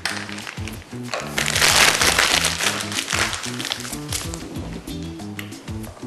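Background music, with a rustle and scraping from about a second in as soft custard is spooned out of a saucepan into a piping bag, the bag crinkling.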